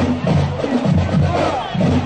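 Marching band playing a piece with a steady beat, about two beats a second, with the noise of the crowd lining the street mixed in.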